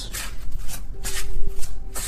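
A deck of tarot cards being shuffled by hand: a run of short papery strokes, about four a second.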